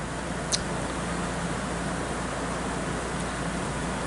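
Window air conditioner running with a steady whooshing hum, and a single brief click about half a second in.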